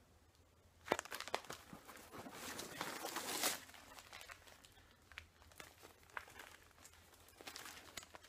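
Plastic zip-lock bags of pipe tobacco crinkling and rustling as they are handled, loudest for a couple of seconds starting about a second in, then fainter scattered clicks and rustles.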